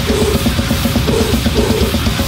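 Grindcore: fast, evenly spaced drumming under heavily distorted guitar.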